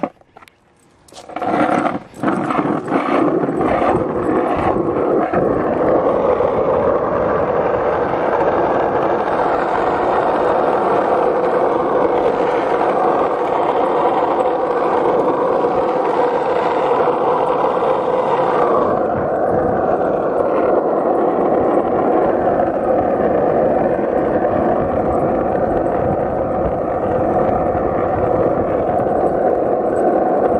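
Steady rushing, scraping noise of moving fast along a paved street, with wind on the microphone and rolling on the asphalt. It starts about a second and a half in, after a few light clicks, and turns a little duller about two-thirds of the way through.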